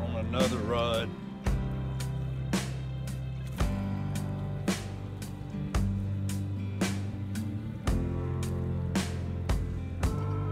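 Background music with a steady beat, a hit about once a second over a bass line that moves every second or two; a short wavering melody line sounds briefly in the first second.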